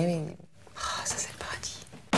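A woman says a soft "oui", then speaks quietly in a breathy near-whisper.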